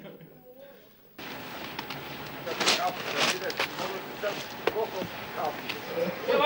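Mortar being scooped from a bucket and slapped onto a wall with a steel trowel: several sharp knocks and slaps over a steady hiss, with voices in the background. It cuts in abruptly about a second in, after a second of near quiet.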